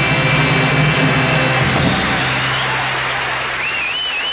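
A 1960s beat band's song ending: a held final chord rings out under a steady noisy wash and slowly fades. A brief wavering high tone comes near the end.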